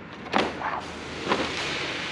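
A thin insulating sheet of textolite with silicone on top, lifted and slid out of a battery case by hand. A few short scrapes and rustles are followed by a steady hissing slide of the sheet against the case.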